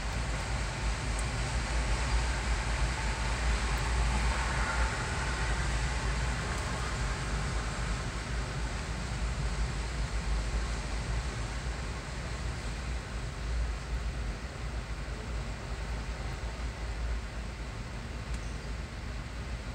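Empty autorack freight cars rolling past: a steady noise of steel wheels on rail, heaviest in the low end.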